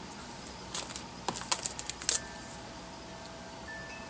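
A small clear plastic bag of plastic flat-back pearl hearts being handled in the fingers: a quick run of sharp crinkles and clicks in the first half, then a faint steady tone.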